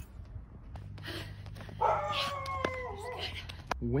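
A single drawn-out animal howl lasting about a second and a half, holding its pitch and then wavering downward at the end, over a steady low hum.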